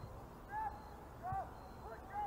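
Distant shouts of players calling across a soccer pitch: short rising-and-falling calls, about half a second and a second and a half in, over a steady low background rumble.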